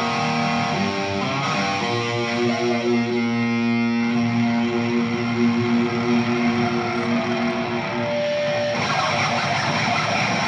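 Electric guitar solo played live: long held notes, with a short bend in pitch about two and a half seconds in.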